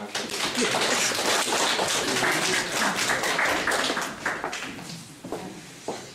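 Audience applauding, a dense patter of hand claps that fades out about five seconds in, with voices mixed in.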